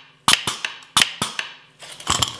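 The pneumatic clamp of an old Kreg pocket-hole jig working off a compressor air line and foot pedal: three sharp snaps, one about a third of a second in and two close together about a second in, each trailing off briefly.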